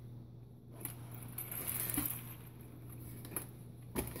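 Faint handling noise as a nitro RC monster truck is picked up and turned over by hand, with a few light knocks and rattles. A steady low hum runs underneath.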